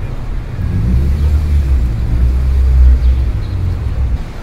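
Low rumble of a motor vehicle that swells over about three seconds and then eases off, like a car passing.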